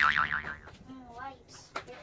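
Cartoon 'boing' sound effect: a springy tone that wobbles rapidly up and down in pitch, loud at first and fading away within the first second.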